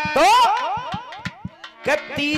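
Live folk stage music: a steady run of quick drum beats under a loud, warbling, swooping pitched sound. The swoop comes in just after the start, fades over about a second, and returns near the end.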